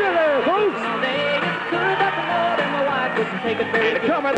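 Music playing, with a voice gliding up and down over it.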